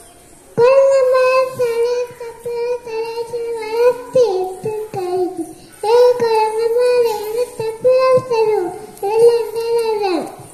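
A young boy singing solo into a handheld microphone, in long held phrases that begin about half a second in, with brief breaths between them.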